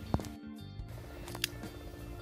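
Quiet background music with steady held tones, and one short sharp click about one and a half seconds in.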